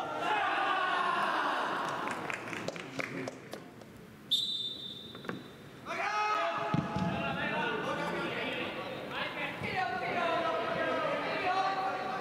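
Young players' voices shouting together, then a referee's whistle blown in one long blast about four seconds in, signalling the kick-off. After it, players call out to one another, with an occasional thud of the ball being kicked.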